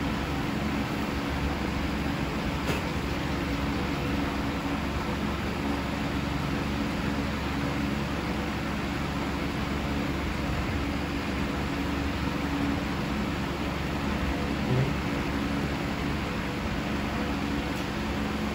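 Electric fan running, a steady even whir with a low hum underneath, and one brief low knock late on.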